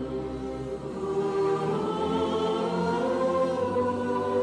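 Choral music: a choir singing long held chords that change slowly, a little louder after about a second.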